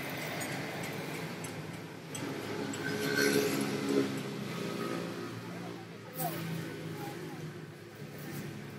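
A motor vehicle passing on the road, its engine growing louder from about two seconds in, peaking near the middle and fading, over background voices.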